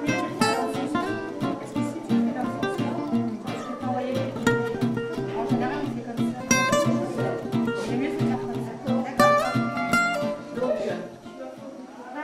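Background music played on plucked acoustic guitar, fading out near the end.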